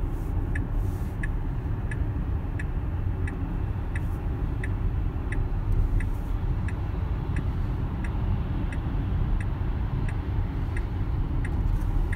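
Tesla Model X turn signal ticking steadily, about three ticks every two seconds, over road and tyre noise inside the cabin. The signal is on to request an Autopilot automatic lane change that has not yet happened.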